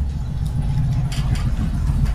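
A steady low rumble of background noise, with a few faint hissing sounds about a second in.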